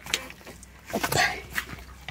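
A few short, breathy calls from penned poultry, with a woman's brief 'op' about a second in.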